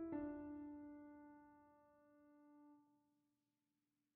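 Background piano music: a chord struck at the start rings and slowly fades away, leaving silence for the last second or so.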